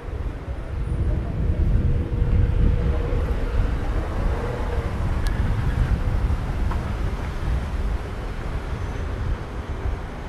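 Outdoor city street ambience dominated by a loud, uneven low rumble that comes in suddenly at the start and holds steady throughout.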